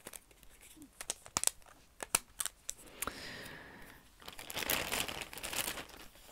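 Plastic packaging being handled and crinkled as thread and bead packets come out of a cross-stitch kit. Short sharp crackles come first, then a louder stretch of rustling in the second half.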